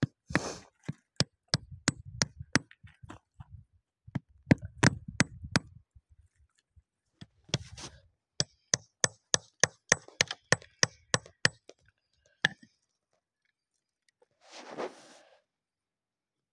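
Small hand hammer striking and chipping at rock and gravel: sharp taps in runs of about three to four a second, with short pauses between them. A brief scuffing rustle comes near the end.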